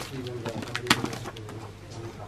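Clear plastic wrapping around a packaged cloth suit crinkling as it is handled, with a sharp crackle about a second in.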